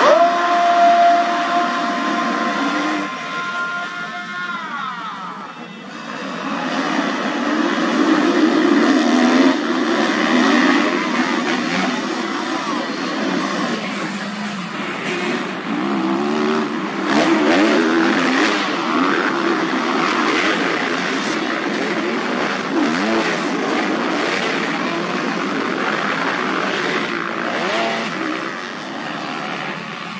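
A pack of motocross bikes racing, many engines revving hard together and swelling and fading as the riders pass. One high, held engine note drops in pitch about four seconds in.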